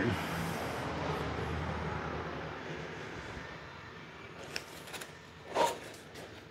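A steady background hiss that slowly fades, then a few light clicks and a brief rustle of torn cardboard packaging being handled near the end.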